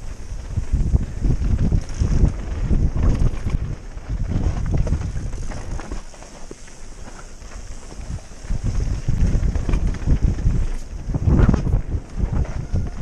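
Wind buffeting the microphone of a camera on a mountain bike riding fast down a dirt trail, in gusty surges, with knocks and rattles as the bike goes over the bumps. A louder jolt comes near the end.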